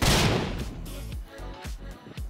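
An explosion sound effect hits right at the start and fades over about half a second, over background music.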